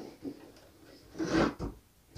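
A cardboard box being handled and turned on a tabletop: soft rustles and a short scraping shuffle about a second in.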